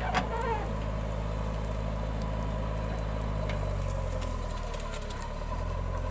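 Diesel engine of a JCB 3DX backhoe loader running steadily under hydraulic load as the backhoe lifts a bucket of soil, with a parked tractor's diesel also idling. The engine note shifts about four seconds in.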